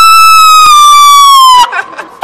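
A man's loud, high-pitched falsetto yell, held for about a second and a half with a slight sag in pitch before it cuts off, followed by shorter yelps near the end.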